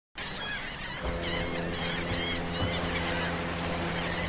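Birds calling in quick series of short chirps, over steady held musical tones that come in about a second in.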